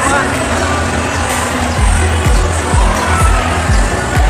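Crowd chatter in a large hall; about two seconds in, music with a deep, pulsing bass beat starts, about two beats a second.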